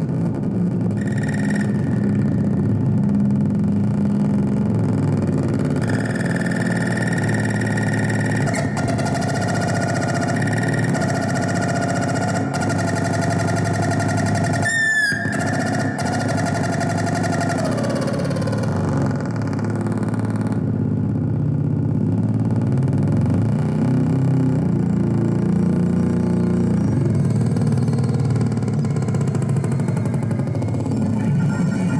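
Modular synthesizer and amplifier feedback in a noise-drone improvisation: a dense low drone throughout. About six seconds in, steady high tones enter, then slide down and fade a few seconds past the middle. A brief, wavering high glide sounds near the middle.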